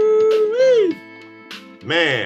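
The final held sung note of a gospel song, one long note that bends up slightly and then falls off, over a sustained backing chord. A man's voice starts talking near the end.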